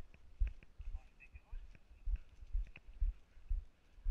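A person's footsteps walking at a steady pace on brick paving, heard as dull low thuds about twice a second.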